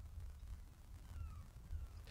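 Faint, short falling calls of a distant bird, repeated a few times about a second apart, over a low outdoor rumble.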